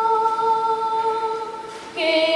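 A woman's unaccompanied solo voice holding one long, steady note that fades away near the end, with a new note beginning right after it.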